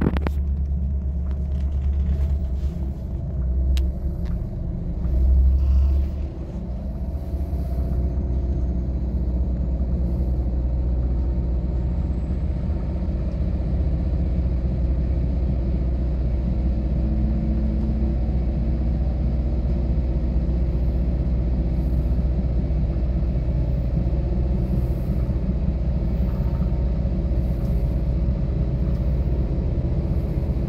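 Steady low rumble of a passenger train running along the track, heard from inside the carriage, with a brief louder surge about five seconds in.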